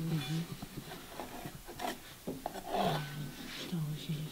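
A hand tool scraping and rubbing over a clay slab on a wooden board, in short irregular strokes, with a few murmured voice sounds.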